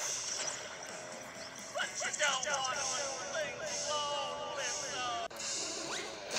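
Voices and background music from a cartoon episode playing from a screen's speakers, quieter than the nearby talk, with the voices coming in about two seconds in.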